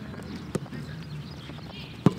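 A single sharp thud of a football being struck, about half a second in.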